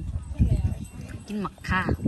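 Speech: people talking, with a few low knocks.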